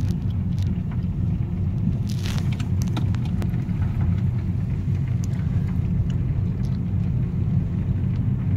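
Steady low rumble of a car driving on a winter road, heard from inside the cabin, with a few faint clicks over it.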